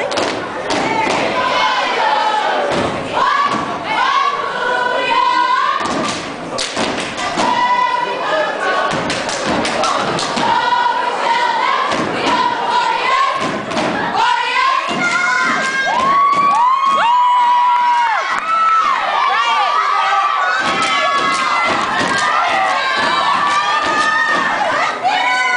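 A step team stomping and clapping in unison, a run of sharp thuds throughout, with loud voices shouting and chanting over the beat.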